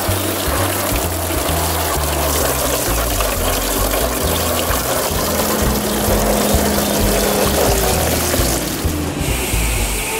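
Background music with a stepping bass line, over water spraying and splashing onto a toy garbage truck. A hiss starts near the end.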